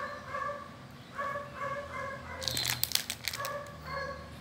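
Short, high, even-pitched whines from an animal, repeated several times, with a brief burst of crackling and clicking from handled plastic about halfway through.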